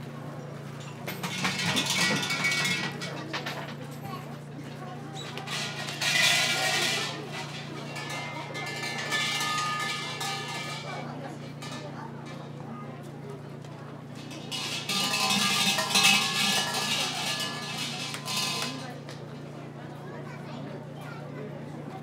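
Shrine bell (suzu) shaken three times on its rope, each a bright, jangling ring of a few seconds, over visitors talking and a steady low hum.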